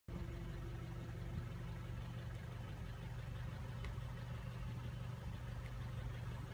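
Car engine running at low, steady revs, a constant low hum heard from inside the cabin.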